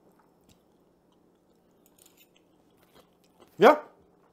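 Faint chewing of a mouthful of crispy salmon skin, with a few soft ticks scattered through it. A man's short spoken "yeah" near the end is the loudest sound.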